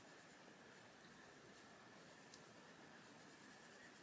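Faint sound of a Faber-Castell Polychromos coloured pencil being worked on paper, barely above room tone.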